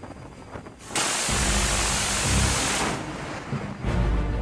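Phalanx CIWS 20 mm Gatling gun firing a burst that starts abruptly about a second in, a continuous ripping noise lasting about two seconds. A second burst starts just before the end.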